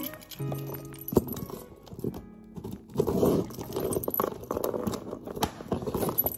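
Soft background music for the first second or two, then a bunch of keys jangling and a key scraping along the packing tape of a cardboard box to slit it open, in irregular clicks and scratches.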